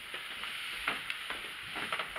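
Steady hiss with a few faint clicks and rustles, typical of handling noise from a handheld camera being moved.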